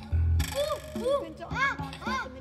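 Voices imitating monkeys: a loud breathy huff, then about half a dozen short rising-and-falling 'ooh-ooh' hoots, over a children's song's backing music with a steady bass beat.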